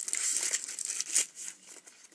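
Crinkling of a plastic sweet wrapper being handled, loudest in the first second and tailing off after.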